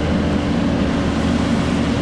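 Fire hose nozzle spraying water in a steady rush, over the steady hum of the fire engine running its pump.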